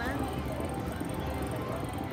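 Huff N' More Puff slot machine playing faint game music during its mansion bonus, over the steady din of a casino floor.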